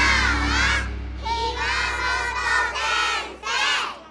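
A group of high voices shouting out together in a few short phrases over a jingle, with a low steady hum underneath; it cuts off just after the end.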